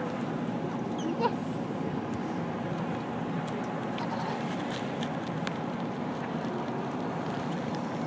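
Police cars and a pickup truck passing slowly and close by in a procession, a steady sound of engines and tyres on the road. A short, sharp rising sound stands out about a second in.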